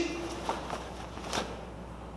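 A few faint, short swishes and soft thuds: a karate gi's cotton snapping and bare feet stepping on foam puzzle mats as blocks and a reverse punch are performed, the last one, about a second and a half in, slightly louder.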